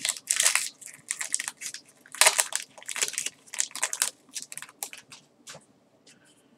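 Magic: The Gathering trading cards handled and flicked through by hand: a quick, irregular run of paper rustles and snaps that stops shortly before the end.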